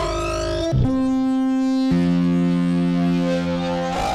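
Electronic music: long held synthesizer notes that step down in pitch twice, once just under a second in and again about two seconds in.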